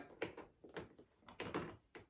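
A baby's toy cube being handled on a plastic high-chair tray, giving a few faint, soft knocks.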